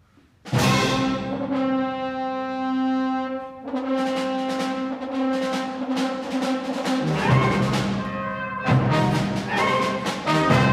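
Concert wind ensemble starting a piece: out of near silence the full band comes in loudly about half a second in, brass to the fore. It holds a chord for about two seconds, then moves on through changing chords.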